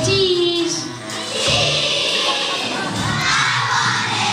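Children's choir singing over a backing track, holding a note at the start; about a second and a half in, many children shout together.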